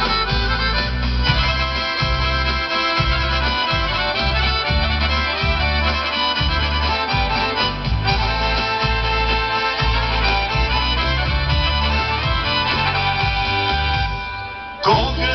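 Instrumental break of a Bulgarian folk dance song: a lead melody over a steady bass beat, with no singing.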